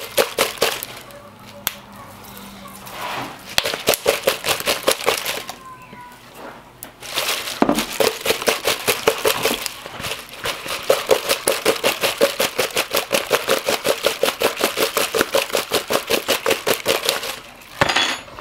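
Crisp fried pork rinds rattling and crackling against a plastic bowl and kitchen paper as the bowl is shaken back and forth to toss them in seasoning. It is a fast, even rhythm of light clicks, with two short pauses.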